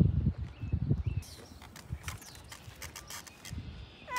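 A horse flapping and smacking its loose lips: a run of low, rapid fluttering pulses that fades out about a second in. Fainter scattered clicks follow.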